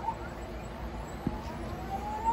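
Anycubic Wash & Cure station starting its wash cycle: the motor spins up, giving a quiet whine that rises steadily in pitch as it speeds up.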